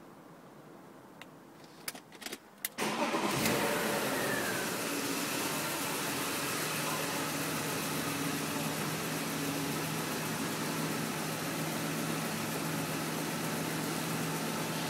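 BMW E36 M3's S50 straight-six engine being started from inside the cabin: a few clicks, then about three seconds in it cranks and fires, the revs flare briefly and fall, and it settles into a steady idle.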